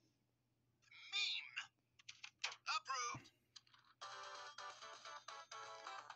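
Cartoon soundtrack played back through a screen's speaker: short, wavering vocal sounds from a character voice, a single thump about three seconds in, then from about four seconds in a music jingle starts.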